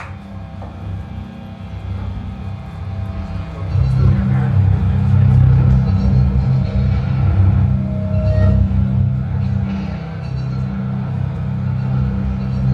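Low, steady droning rumble from the band's stage amplifiers with instruments held but not played, swelling about four seconds in.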